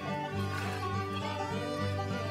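Instrumental background music led by string instruments, with no speech.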